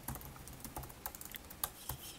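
Typing on a computer keyboard: irregular, faint keystroke clicks, several a second.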